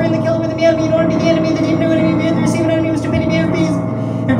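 A male voice rapping very fast into a microphone, crisp "s" sounds coming several times a second, over steady sustained piano chords.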